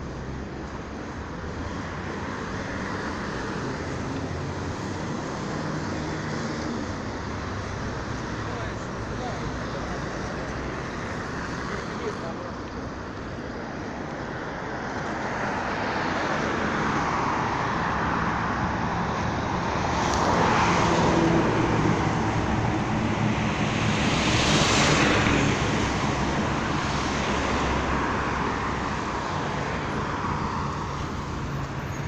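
Road traffic on a city street: a steady wash of engine and tyre noise, with vehicles passing close by and swelling louder twice in the second half.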